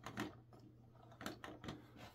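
A few faint, separate clicks of LEGO plastic as a hand turns the model's brick-built water wheel and lets go.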